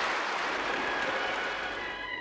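Studio audience applauding, the clapping slowly dying away toward the end.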